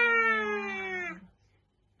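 A woman's voice singing one long held note on the word "meia", ending just over a second in.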